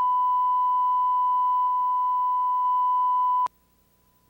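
Steady 1 kHz line-up tone on the slate of a broadcast videotape, the reference tone for setting audio levels. It holds one pitch for about three and a half seconds, then cuts off suddenly with a click.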